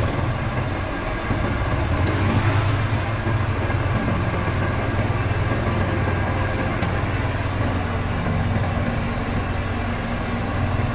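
Diesel engine of a Sumitomo tracked asphalt paver running steadily at low revs as the paver crawls up onto a flatbed truck. The engine swells briefly about two seconds in, and there is a single short click near the seven-second mark.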